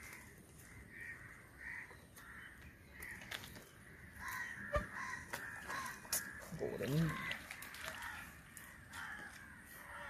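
Crows cawing over and over, faint, with a few soft clicks and a brief voice about seven seconds in.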